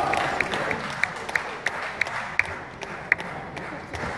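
Applause and crowd noise in a large hall after a table tennis point, dying away, with scattered sharp clicks through it.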